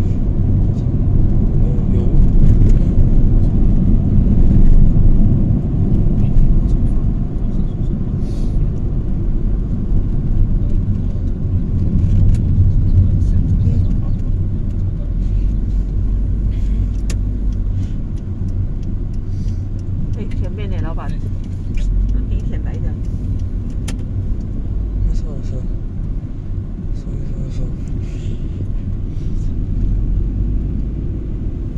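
Road noise heard inside a moving car's cabin: a steady low rumble of engine and tyres, a little louder in the first few seconds.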